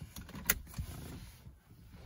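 A car seatbelt tongue clicking into its buckle once, sharply, about half a second in, amid faint rustling of the belt webbing and clothing.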